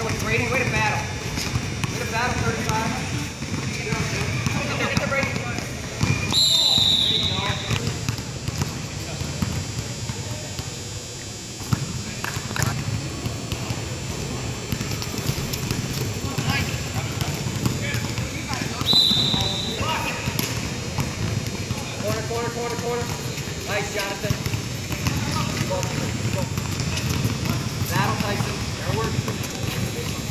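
Indoor basketball game: voices of players and spectators shouting, with the ball bouncing on the hardwood-style court. A referee's whistle blows twice, about six seconds in and about nineteen seconds in.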